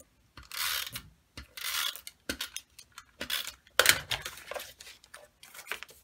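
Stampin' Up! Snail adhesive tape runner drawn twice across the back of a piece of patterned paper, a short rasping zip with each stroke, followed by clicks and rustles of paper being handled and pressed into place.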